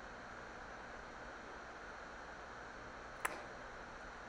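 Faint steady hiss of room tone, with one short click about three seconds in.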